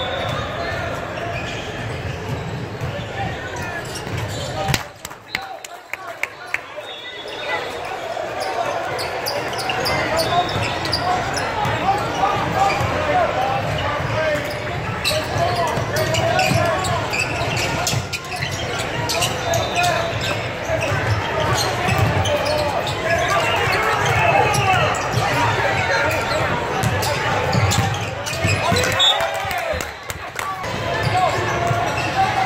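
A basketball bouncing on a hardwood gym floor, with the chatter of players and spectators echoing through a large hall.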